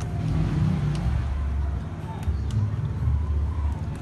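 Uneven low rumble of outdoor background noise, with faint voices and a few light clicks.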